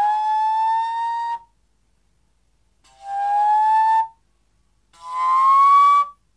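Vermeulen flute, a straight-blown slide flute, playing three long notes, each sliding slowly upward in pitch, with short breaks between them.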